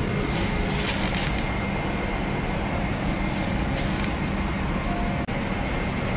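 Steady hum of a Boeing 777-300ER's cabin air and ventilation, with brief rustles of fabric and plastic wrapping being handled around the first second and again near four seconds in.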